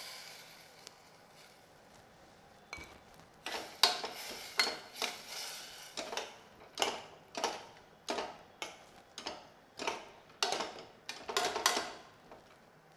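Steel ladle stirring a watery vegetable gravy in a pressure cooker pot, scraping and knocking against the metal in a steady run of strokes about two a second. Water from the last pour trickles away at the start.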